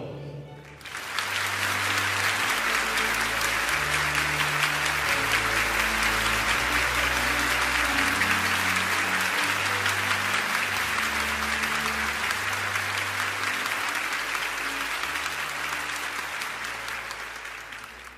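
An audience applauding steadily for about sixteen seconds, building up about a second in and fading out near the end, over soft background music with low sustained notes.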